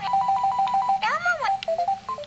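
Electronic ringtone from a battery-powered Elmo toy cell phone as its buttons are pressed. It plays a quick run of short beeps on one note, then a tone that swoops up and back down about a second in.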